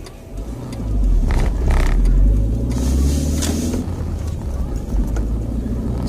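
Car engine and road noise heard inside the cabin, swelling about a second in as the car pulls away and picks up speed, with a brief hiss near the middle.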